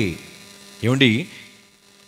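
Steady electrical mains hum from the live sound system, heard in the pause between words, with a brief phrase from a man's amplified voice about a second in.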